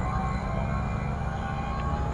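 A TVS NTorq Race XP scooter's single-cylinder engine running as it creeps forward at walking pace in traffic. A steady low rumble is heard, with a faint steady whine above it.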